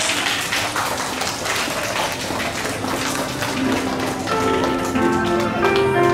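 A patter of scattered hand-clapping. About four seconds in, instrumental background music with a melody begins.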